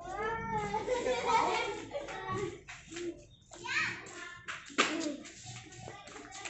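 Children's voices calling and chattering, too unclear to make out as words, loudest at the start and again about four seconds in. A single sharp click sounds near the end.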